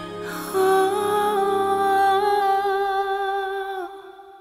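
A female singer holding one long note with vibrato over backing music, from about half a second in until just before the end.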